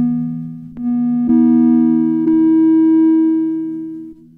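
Ciat Lonbarde Sidrax and Cocoquantus synthesizer setup sounding sustained, overlapping pitched tones as fingers press its metal touch plates. New notes enter about a second in and again past two seconds, and the sound fades toward the end.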